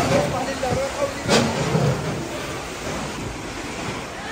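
Indistinct voices over steady background noise, with a single sharp knock about a second and a half in.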